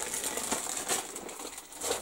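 Crinkling and rustling of plastic as a model kit's sprues are handled and packed in their plastic bag, with a few light clicks.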